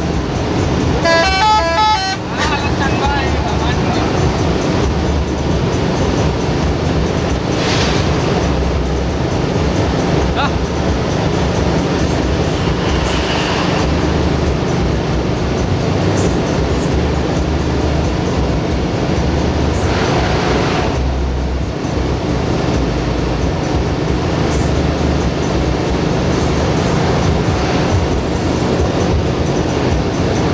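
Steady engine and road rumble heard from inside a moving intercity bus at speed, with a short multi-note horn run about a second in.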